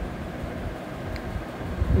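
Steady low background rumble of room noise, with one faint click about a second in.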